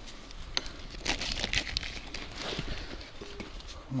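Fishing landing net with a fish in it being handled and laid down on a stony bank: the mesh rustles and the frame and handle give scattered clicks and knocks.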